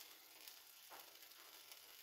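Faint, steady sizzling of an egg mixture with bacon and tortilla pieces frying in a nonstick pan.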